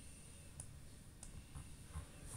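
Two faint, sharp clicks about two-thirds of a second apart, over low room noise and a faint steady high-pitched whine.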